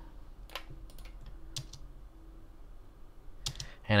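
A few separate clicks on a computer keyboard, spaced about a second apart, over quiet room tone.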